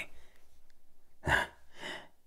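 A man's short, sharp breath, like a scoffing huff, a little over a second in, then a softer breath just before he speaks again.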